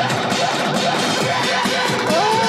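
Song excerpt from a rock-electronic track's breakdown: a sung voice's samples chopped into a stuttering, glitchy pattern, triggered from a drum pad, over dense backing music.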